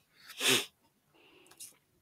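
A single short, forceful burst of breath from a person, about half a second in, followed by faint low sounds.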